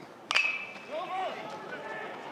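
A metal baseball bat hitting a pitched ball: one sharp ping about a third of a second in, with a brief high ringing after it.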